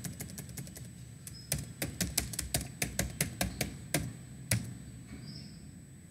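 Computer keyboard keys clicking as a search term is typed: a few keystrokes at the start, a quick run of them through the middle, then two single presses about four and four and a half seconds in.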